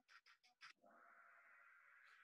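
Near silence: a few very faint ticks, then a faint held tone starting about a second in.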